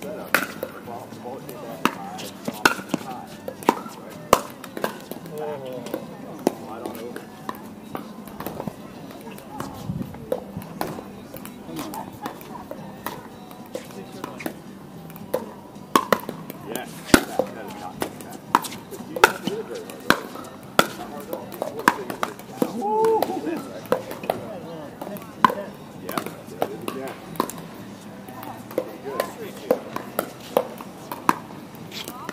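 Pickleball paddles hitting a hollow plastic pickleball during rallies: a run of sharp pops at irregular intervals, sometimes several a second.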